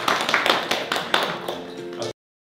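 A small group clapping their hands in quick irregular claps, over background music.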